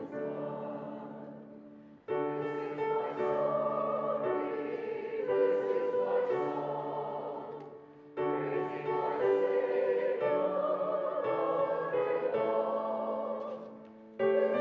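A choir singing a slow hymn with sustained chords and instrumental accompaniment. The music comes in phrases of about six seconds, each fading and breaking off before the next begins, about two and eight seconds in.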